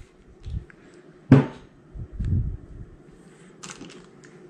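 Metal drivetrain parts being handled on a workbench: one sharp clunk about a second in as a part is set down, with softer knocks and a brief rustle near the end.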